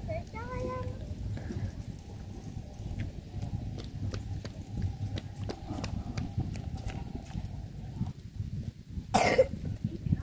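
Faint voices over a steady low drone, with scattered light clicks and a single loud cough about nine seconds in.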